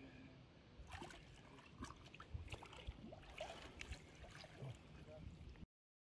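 Faint water sloshing and splashing as a giant catfish is let go by hand in a river, with scattered knocks and splashes; the sound cuts off suddenly near the end.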